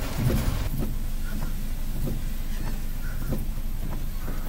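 Steady low rumble of a car's engine and tyres heard from inside the cabin, with a few faint knocks.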